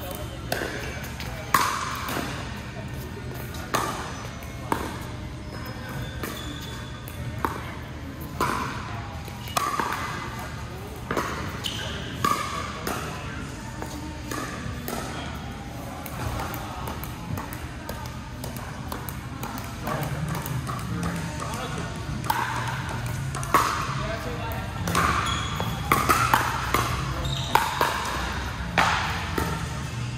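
Pickleball paddles striking a hard plastic ball during doubles rallies: sharp pops with a ringing echo from the hall, about a second apart, coming thicker in the last third. A steady low hum runs underneath.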